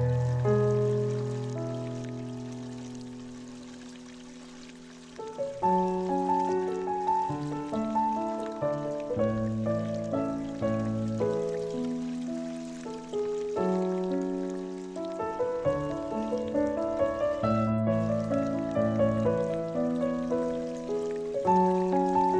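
Solo piano music: a chord held and slowly fading for about five seconds, then the piece picks up again with a steady flow of notes.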